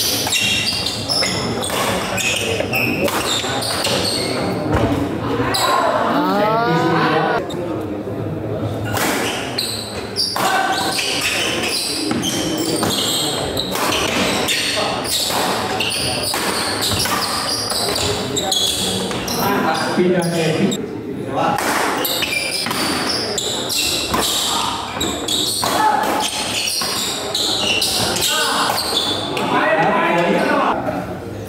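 Badminton doubles rally: rackets strike the shuttlecock again and again and feet land on a wooden court, echoing in a large hall over steady crowd chatter.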